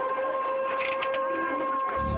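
Outdoor tsunami warning siren sounding one steady, unwavering tone: the signal alerting residents that a tsunami is about to strike.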